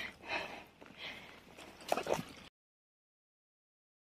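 A dog sniffing in grass: a few short, faint sniffs and light rustles, then the sound cuts off to silence about two and a half seconds in.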